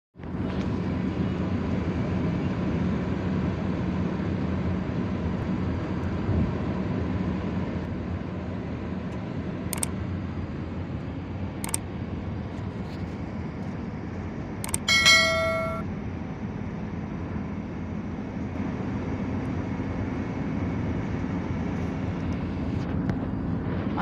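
Steady road and engine rumble heard from inside a moving car's cabin. A few sharp clicks come in the middle, followed by a single pitched beep about a second long, the loudest sound in the stretch.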